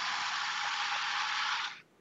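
Ninja Nutri-Blender personal blender running under hand pressure (push-to-blend), blending a green smoothie in its cup: a steady rushing noise that cuts off suddenly near the end as the cup is released.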